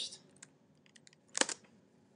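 A few faint taps on a computer keyboard, then a louder double tap about a second and a half in.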